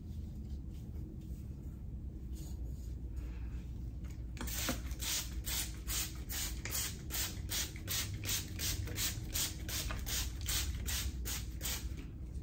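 A comb raked repeatedly through the hair of a kinky afro wig, a scratchy stroke about three times a second, starting about four seconds in.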